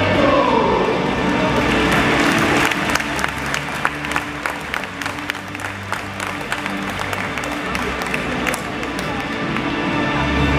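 Music playing over a crowd applauding, the clapping strongest from about two seconds in to near the end.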